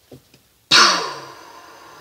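A woman's sudden, loud, breathy exhalation with a falling voiced tone, like a heavy sigh, starting under a second in and fading over about a second.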